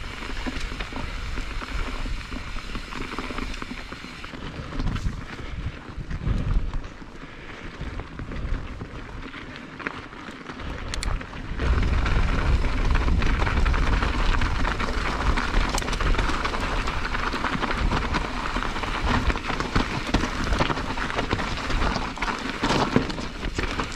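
Mountain bike being ridden over a dirt and rocky trail: tyres crunching on gravel and the bike rattling, with wind buffeting the camera microphone. It gets louder and rougher about halfway through.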